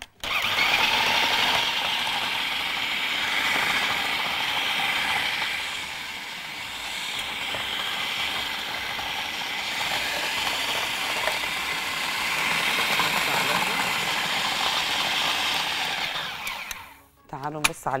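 Food processor running continuously, grinding dry, freezer-hardened kunafa (shredded kataifi dough) into fine crumbs. It starts abruptly, drops somewhat in level midway before rising again, and stops about a second before the end.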